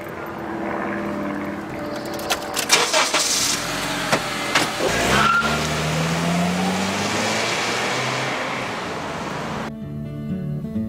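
Honda CR-V starting up and pulling away, its engine note rising as it accelerates from about halfway through. Acoustic guitar music comes in just before the end.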